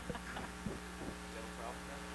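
Steady electrical mains hum from the amplified sound system, with a few faint short sounds in the first half second.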